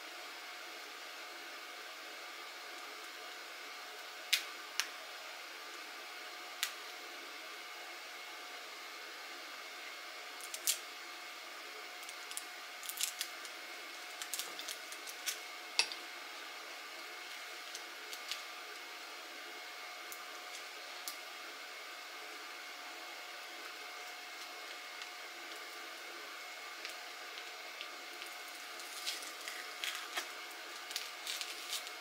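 Scattered small clicks and crinkles of plastic wrap and tape being handled and picked at on a swollen LiFePO4 cell pack, busiest from about ten to sixteen seconds in and again near the end, over a steady faint hum.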